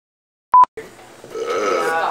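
A single short, loud electronic beep about half a second in, cutting off with a click. Room tone follows, then a voice begins near the end.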